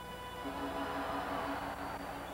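Ballpark music playing steady held notes over crowd noise, with a lower note coming in about half a second in.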